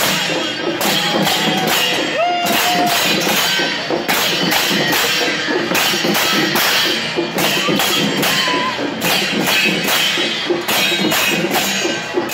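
A Newar dhime band of barrel drums and large hand cymbals playing a loud, steady rhythm, with the cymbals clashing on the beat and ringing between strokes.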